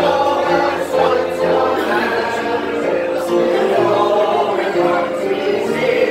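A crowd of people singing together in chorus, accompanied by an organ holding sustained chords.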